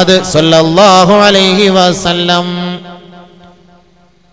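A voice chanting a religious melody in long, drawn-out notes that bend up and down, fading out about three seconds in.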